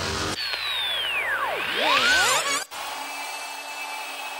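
Motorcycle engine revving hard, its pitch sweeping steeply down and then climbing back up. It cuts off suddenly about two-thirds of the way in, leaving a quieter steady hum.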